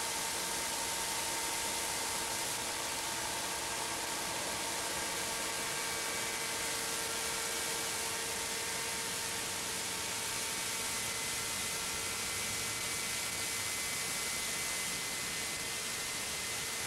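Glow-fuel engine of a GMP King Cobra model helicopter in flight, a steady whine at constant pitch, faint under heavy hiss.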